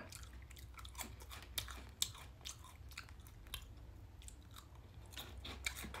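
Close-miked chewing of a mini rice cake snack: faint, irregular crunchy clicks with the mouth closed.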